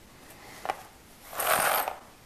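Small brass hinge being handled: a faint click about two-thirds of a second in, then a short scraping rustle around a second and a half in, as the hinge is worked and set down on a rubber mat.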